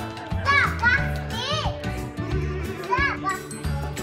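A young child's high-pitched squeals: several short rising-and-falling cries in the first two seconds and again about three seconds in, over background music.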